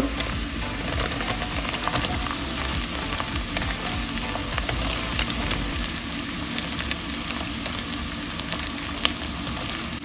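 Chopped garlic, ginger, green chillies and curry leaves sizzling in hot oil in a pan: a steady frying hiss with scattered small pops.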